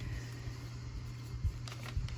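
Steady low room hum, with a few faint crinkles of a paper greeting card and envelope being handled about a second and a half in.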